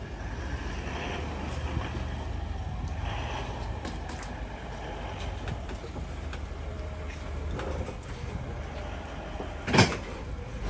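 Lexus LX 500d's diesel engine running at low speed as the SUV creeps up a metal loading ramp, with scattered small clicks and one loud, sharp knock just before the end.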